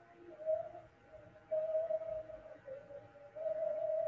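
A wavering mid-pitched tone that swells and fades several times over faint hiss, with no speech.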